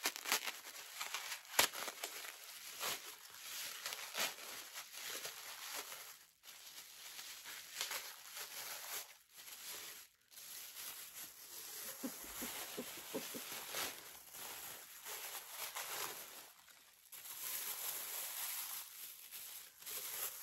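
Tissue paper crinkling and tearing in irregular crackles as a wrapped gift is unwrapped by hand.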